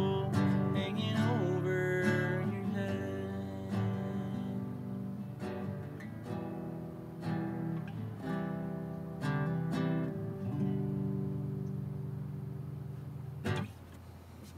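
Nylon-string classical guitar played without singing through the song's closing bars, chords strummed and picked and left to ring, slowly getting quieter. A last sharp strum comes near the end, then the playing stops.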